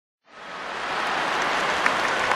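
Applause-like noise fading in from silence a quarter second in, building to a steady level within about a second.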